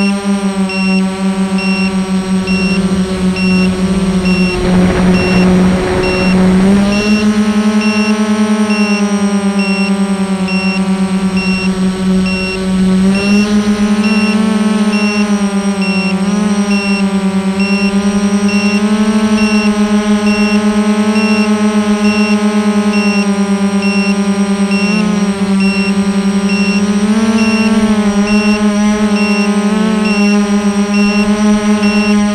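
Armattan Rev2 FPV quadcopter's brushless motors and propellers heard from its onboard camera: a loud, steady buzz whose pitch shifts slightly up and down with throttle, with a rushing noise mixed in from about four to seven seconds in. A faint high beep repeats evenly throughout.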